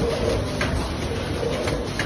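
A multihead weigher and vertical pouch-packing machine running, with a steady mechanical sound and a short sharp click about once a second from its mechanism.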